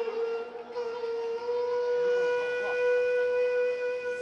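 One long instrumental note held steady, with a rich set of overtones. It wavers slightly in pitch at first and then holds level.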